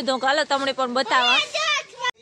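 A child talking in a high voice, speech only.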